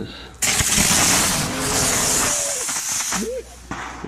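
A lithium-ion battery struck with a hammer vents violently. A sudden loud hiss of escaping gas starts about half a second in, holds for about two seconds, then fades.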